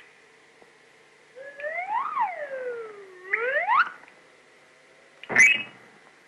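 Old cartoon sound effect: a whistle-like tone swoops up, falls slowly, then rises again over about two and a half seconds. About five seconds in comes a short, sharp crash.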